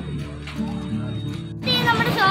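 Background music with sustained low notes. Near the end, after a sudden cut, a high-pitched, wavering, voice-like sound with rising and falling pitch begins.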